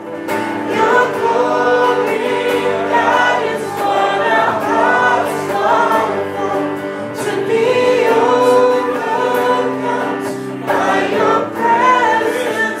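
A woman singing a melody into a microphone through a PA speaker, over electric guitar accompaniment.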